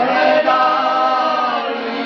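Piano accordion playing sustained chords while men sing along.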